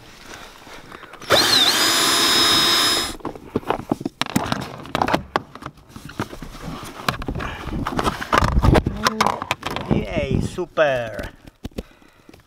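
A power drill runs in one burst of about two seconds, its motor whine dipping and then holding steady. A string of clicks, knocks and scrapes follows as hands work at plastic trim and wiring.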